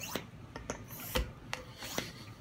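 Small plastic hand pump being worked, its plunger rubbing in the barrel with a scraping sound and a few light knocks about half a second apart.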